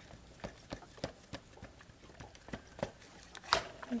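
Small distress ink pad being dabbed against a clear acrylic stamp: a run of light, irregular taps, two or three a second, with a louder knock near the end.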